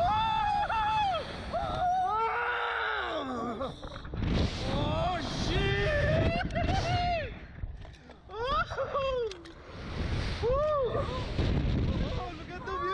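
A man and a woman screaming and yelling as they are launched on a slingshot thrill ride: several long, wordless cries that rise and fall in pitch. Wind rushes over the microphone beneath them.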